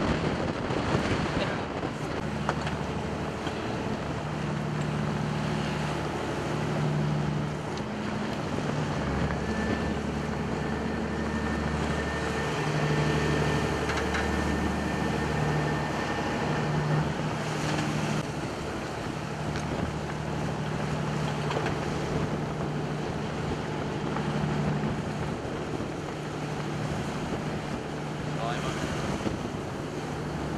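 Coast Guard boat's engines running steadily under way in rough water, their hum swelling and fading. Wind buffets the microphone throughout, with a faint higher whine joining for several seconds in the middle.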